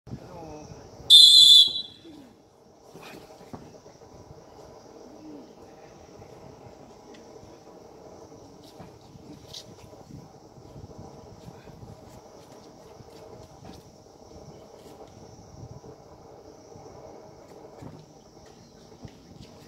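A referee's whistle gives one short, loud, shrill blast about a second in. After it there is a steady murmur of crowd chatter.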